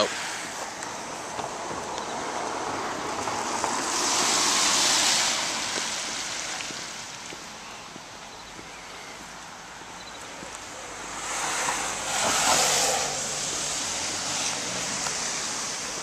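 Steady rain hiss and the swish of car tyres on a wet road, with two vehicles passing, the spray noise swelling and fading about four and twelve seconds in.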